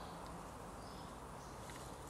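Faint, steady outdoor background noise in a garden, with no distinct event.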